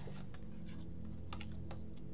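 Playing cards being drawn from the deck and laid down on the table: a few light clicks and taps, with two sharper ones past the middle, over a faint steady low hum.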